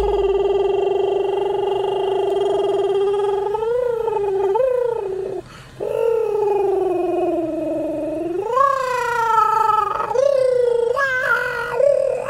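A man singing wordless, long-drawn high notes, sliding up and down between held pitches, with a short breath break about five and a half seconds in.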